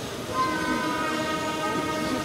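Processional brass band playing a funeral march, with held chords that come in about half a second in, one note bending down in pitch partway through.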